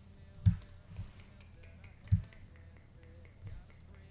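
Two dull thumps about a second and a half apart, with a couple of lighter knocks around them, over faint background music.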